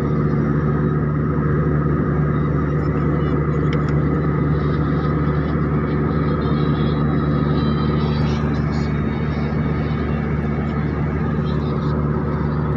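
A vehicle engine drone, steady and unbroken, with a constant low hum under an even rushing noise.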